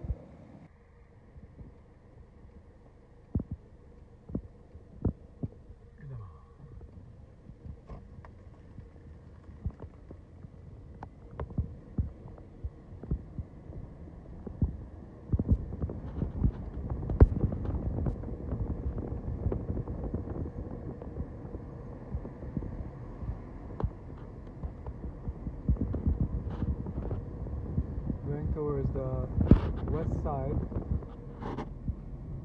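A car driving, heard from inside: a low rumble with frequent knocks and thuds, much louder from about halfway on. Before that it is quieter, with scattered clicks.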